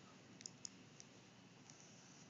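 Near silence with a few faint, short clicks in the first second, as a baby's fingers press and tap at a mobile phone's keys.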